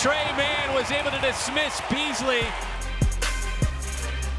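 A voice talking over arena background noise for the first two and a half seconds, then music with a steady deep bass and a few heavy falling bass kicks.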